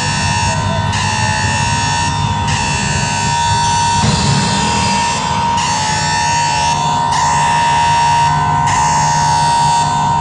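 Loud electronic dance music playing on the party's sound system, with a held synth tone over a dense bass end and the upper pattern shifting every second and a half or so.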